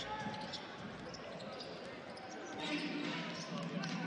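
A basketball being dribbled on a hardwood court during play, its bounces faint over the murmur of an arena crowd.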